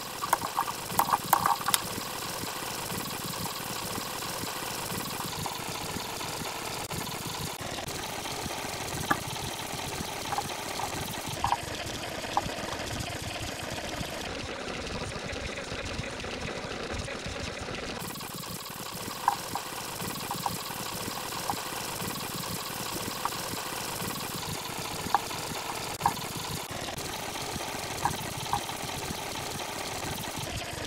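Computer mouse clicks at irregular intervals over a steady, noisy hum.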